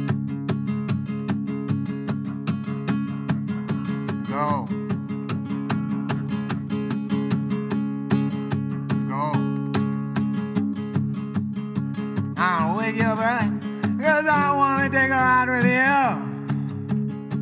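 Acoustic guitar strummed in a quick, even rhythm as the intro to a song. A wavering singing voice comes in over it in the last few seconds.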